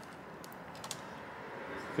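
A few faint light clicks of fingers handling a laptop's thin metal RAM shield as it is lifted, over a steady low hiss.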